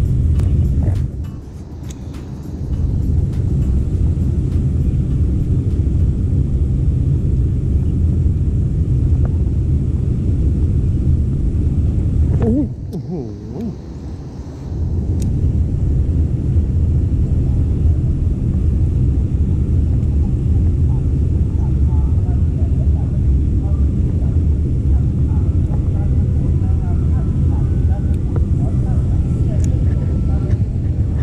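Wind buffeting the microphone: a loud, steady low rumble that drops away briefly twice, about a second in and again just before the halfway point.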